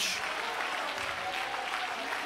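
A large congregation applauding and cheering in a steady wash of clapping.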